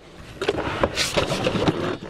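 A heavy wooden slide-out drawer carrying a Dometic dual-zone fridge freezer being dragged out of its cabinet. It scrapes along, starting about half a second in, with a few knocks as it comes off the lip. The drawer has no working glide system, which makes it heavy and awkward to move.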